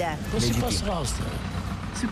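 A person speaking in a street interview, with steady traffic rumble behind the voice.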